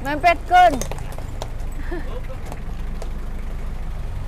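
Mitsubishi Colt pickup truck's engine idling steadily, with a few light knocks over it.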